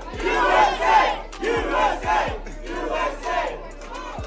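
A small crowd of people cheering and shouting excitedly together, with a woman yelling among them and some hand clapping; loudest in the first second or so, then settling a little.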